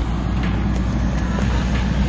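Steady low rumble and hiss of wind buffeting a small action camera's microphone, with a few faint clicks.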